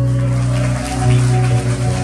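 A live band's electric guitars holding one long sustained chord at the end of a song.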